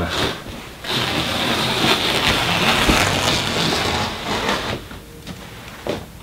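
Carpet wall trimmer pushed along the skirting, its blade slicing through the carpet edge with a steady cutting noise. The cut starts about a second in and stops just before the five-second mark.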